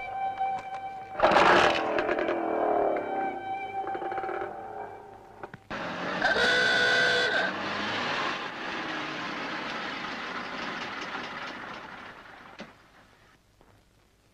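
Film background music with held notes, then a sudden loud musical hit about a second in. After a break, a vintage car's horn sounds for about a second and a half, and the car's engine and tyres run as it drives up, fading out near the end.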